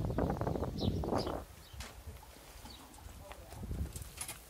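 People laughing and talking for about a second and a half, then quiet outdoor ambience with a few faint clicks and short high chirps.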